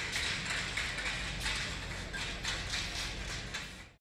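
Shoes tapping on a tiled floor in a quick, irregular run of taps from a dancing baker, fading out at the very end.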